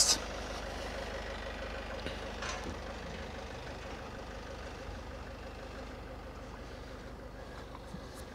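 Steady low hum of an engine running at idle, slowly getting a little quieter.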